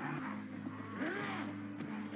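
Quiet drama soundtrack: a steady low rumble, with a faint rising-and-falling vocal-like glide about a second in.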